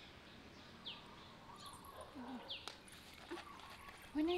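Faint background bird chirping: a short, high, falling chirp twice, about a second and a half apart, with a sharp click between them and faint low sounds in the second half.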